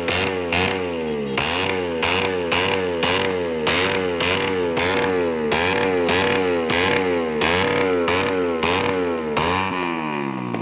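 Suzuki Raider 150 carburetted single-cylinder four-stroke engine revved in rapid throttle blips, about two and a half a second, its pitch rising and falling with each. A sharp crack from the exhaust comes at each blip, the popping of an exhaust shooting flames. Near the end the revs fall away.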